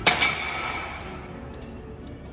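A single sharp metal clank with a ringing tail that fades over about a second, from the cable row machine's weight-stack plates knocking together during a rep.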